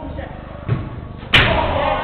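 A dull thud, then a loud bang just over a second in, as a football is struck hard during indoor five-a-side play. Players' voices shouting follow the bang.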